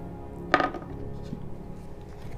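Soft background music with steady held tones. About half a second in comes a single sharp knock with a brief ring: a small figurine knocking against the wooden tabletop.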